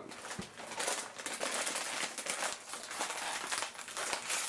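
Crinkling of a foil potato-chip bag being pulled open by hand, a continuous crackle of fine snaps.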